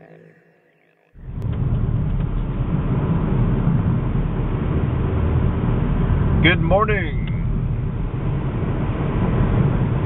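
Steady low rumble of a car's engine and tyre road noise heard from inside the moving car, starting abruptly about a second in.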